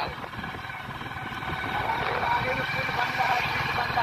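Motorcycle riding at a steady speed: low engine hum under rushing air on the microphone.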